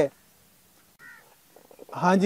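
A hookah gurgling as it is drawn on: a quick run of bubbling pulses in the last half second, after a faint short sound about a second in.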